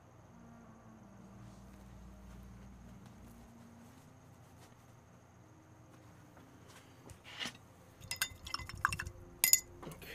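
Faint room hum, then from about seven seconds in a string of sharp clinks and taps from small hard objects, the loudest about half a second before the end.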